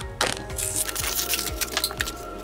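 Background music with a steady beat, about two beats a second, over the crinkling and tearing of a toy car's plastic blister pack and cardboard backing as it is opened.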